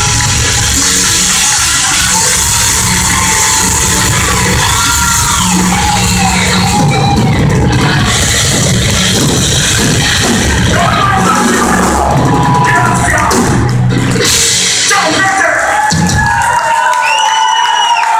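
A heavy metal band playing live in a club, loud, with drums, bass and guitars. The full band stops about 16 to 17 seconds in, and the crowd cheers and yells.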